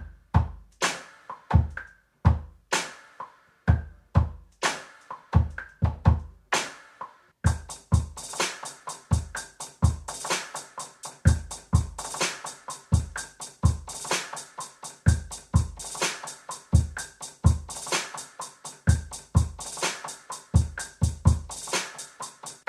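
A dark, moody hip-hop/R&B instrumental beat playing, with hard-hitting electronic kick and snare drums under melodic piano and synth parts. About seven and a half seconds in, rapid hi-hats join the drums.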